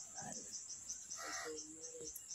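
Faint insect chirping, a steady high-pitched pulse repeating about four times a second.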